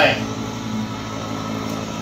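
Countertop electric can opener running with a steady motor hum as it turns the can against its cutting wheel.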